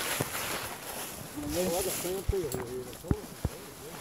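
Coonhounds barking in quick, short barks that rise and fall in pitch, starting about a second and a half in: the bark of hounds treed at the foot of a tree. A few sharp knocks and snaps of brush come in between.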